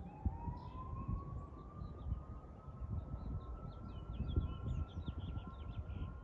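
A siren wailing as one long tone that dips, then slowly rises and holds high. Small birds chirp over it, busiest in the second half, above a low rumble.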